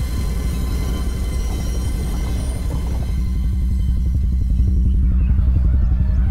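Film score of a deep, rapidly pulsing low drone with thin high held tones over it; the high tones drop away about halfway through and the low drone carries on.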